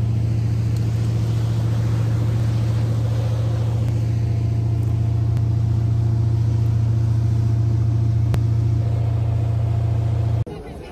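Ski boat's engine running with a steady low drone.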